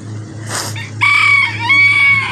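A rooster crowing: a loud, high call starts about a second in, held steady, dips briefly, then is held again. A short burst of noise comes just before it.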